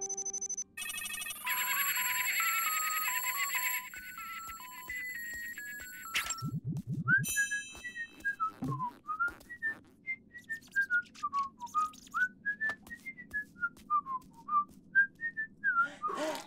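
Electronic phone tones beeping out a stepped little melody. Then, about seven seconds in, a cartoon character whistles a wandering tune with sliding notes over light ticking sounds.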